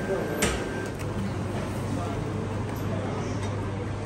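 Faint background voices over a steady low hum, with a short sharp click about half a second in and a fainter click at about a second.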